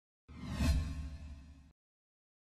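Whoosh transition sound effect: one swish that swells quickly and fades out over about a second and a half, with a deep low rumble under it.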